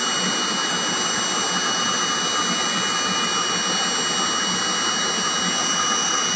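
Vibratory stress relief exciter, an eccentric-weight motor driving a metal workpiece, running steadily just under 4,900 rpm: a constant mechanical rush with thin steady high whine tones. Its speed is being raised slowly towards the workpiece's resonance peak.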